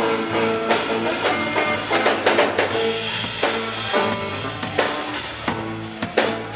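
Live garage rock band playing an instrumental passage: a drum kit keeping a steady beat under electric guitar and held organ chords.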